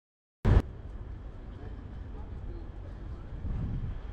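After a moment of silence, a short loud thump about half a second in, then steady street ambience: a low rumble of traffic and wind on the microphone, with faint distant voices.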